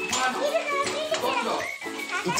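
Several voices talking over one another, children among them, over music.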